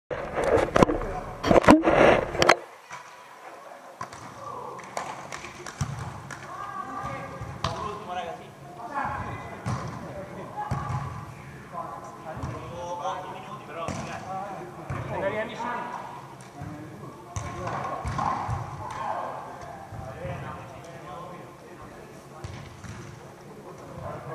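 Loud thumps right at the microphone for the first couple of seconds. After that, indistinct voices of people talking across a large indoor sand-volleyball hall.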